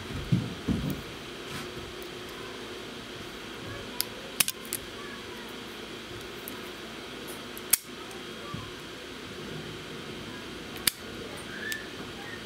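Handheld auto wire stripper working on a wire: a few sharp metal clicks as the jaws grip, strip and spring open, three of them close together about four seconds in. A faint steady hum runs underneath.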